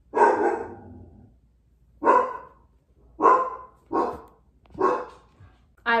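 A woman coughing five times in separate, sudden coughs about a second apart, the first one trailing off longest.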